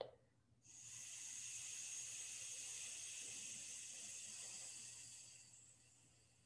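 A long, slow exhale through the left nostril with the right held shut, releasing a held breath in alternate-nostril breathing: a soft, steady hiss that begins about half a second in and fades away near the end.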